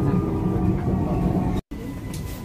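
Vienna U-Bahn metro train heard from inside the carriage: a steady low rumble with a faint steady whine as it runs. Near the end the sound cuts off abruptly and comes back quieter.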